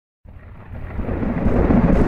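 Thunder rumbling, starting a moment in and growing steadily louder.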